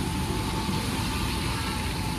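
Road traffic on a rain-wet street: passing vehicles make a steady low rumble with tyre hiss.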